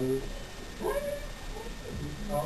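A dog gives one short, rising call about a second in.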